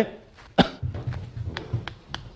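A single sharp cough about half a second in, followed by a faint low murmur with a few small ticks in the room.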